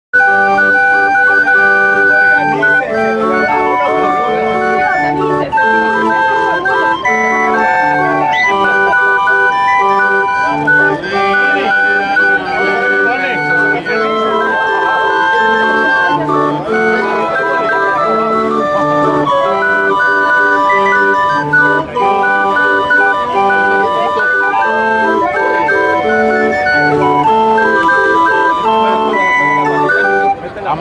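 Hand-cranked Mexican barrel organ (organillo) playing a melody of held reedy notes over a regular alternating bass.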